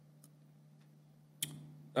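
Quiet room tone with a steady low hum, broken by a single short click about a second and a half in.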